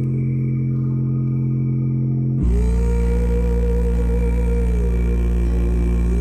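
Music with sustained, deep bass notes played loud through a JBL Flip 4 portable Bluetooth speaker for a bass test. A deeper bass note comes in about two and a half seconds in and holds, under a higher melody line that slides down and back up.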